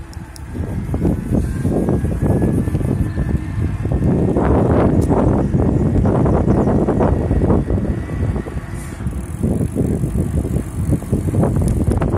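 Riding noise from an e-mountain bike on asphalt, picking up speed from about 15 to 25 km/h: wind rumbling and gusting on the handlebar-mounted microphone over the roll of knobby tyres. A faint rising whine runs under it in the first few seconds.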